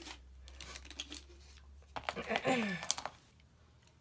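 Light clicks and rattles of small metal e-cigarette batteries and parts being handled on a tabletop, with a brief murmured voice about halfway through.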